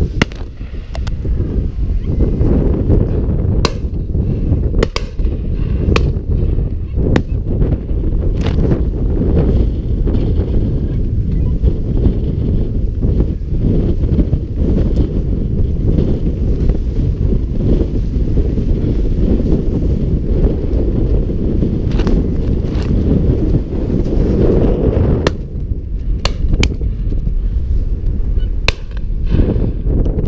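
Wind buffeting an action-camera microphone: a loud, steady low rumble. About a dozen sharp clicks or cracks come through it, in two clusters in the first third and near the end.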